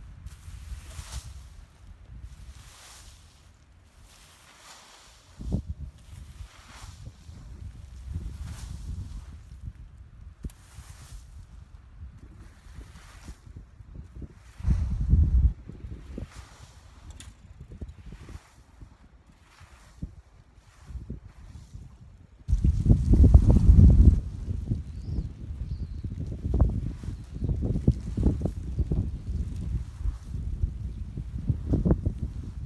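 Scratchy strokes of a rake through dry straw and dead leaves, about one a second. Wind buffets the microphone in gusts, loudest a little past two-thirds of the way through.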